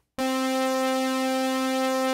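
A Korg Kronos synthesizer holding one steady note near middle C, rich in overtones, starting just after the beginning.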